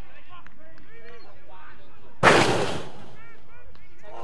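A sudden loud burst of noise about two seconds in, dying away within about half a second, over distant shouting voices of players on the field.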